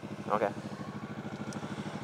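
Motorcycle engine running steadily while riding, a low, even beat of firing pulses under faint road and wind hiss.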